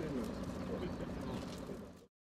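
Steady outdoor background noise with a couple of short falling low-pitched sounds in the first second, fading out at the end.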